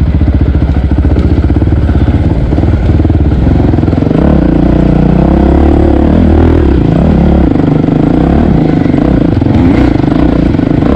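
Dirt bike engine running up close under changing throttle. It pulses rapidly for the first few seconds, then its pitch wavers up and down from about four seconds in.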